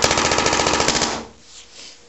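Tippmann 98 Custom paintball marker firing a rapid, evenly spaced burst of reballs in PSP ramping mode at about 15 balls per second. The burst stops a little over a second in.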